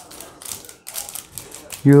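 Baseball cards being handled on a wooden table: a quick run of light clicks and flicks as cards are slid and squared off the stack.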